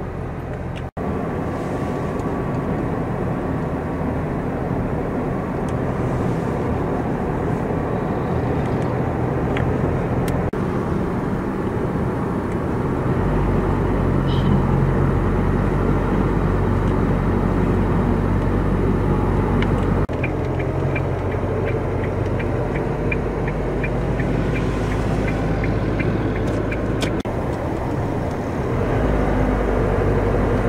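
Car driving along a road, heard from inside the cabin: a steady engine hum and tyre noise, changing abruptly a few times. A run of quick, light, evenly spaced ticks comes in the later part.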